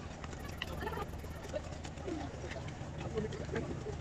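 Busy railway platform ambience: many passengers' voices mixed with short chirping calls, over a steady low hum.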